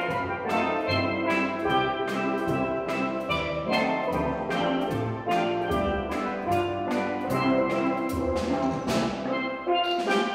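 Steel drum band playing, the steelpans' struck notes ringing over the low notes of the bass pans, with a steady beat of about two strokes a second.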